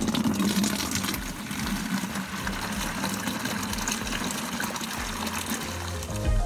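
Water running from an outdoor wall spigot into a plastic watering can, a steady stream filling the can.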